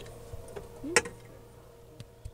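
A single sharp click about a second in, just after a short rising squeak, over a faint steady hum.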